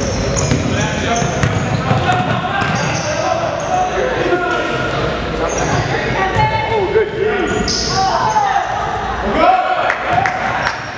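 Indoor basketball game: a ball dribbled on a hardwood court with sneakers squeaking and voices calling out, all echoing in a gymnasium.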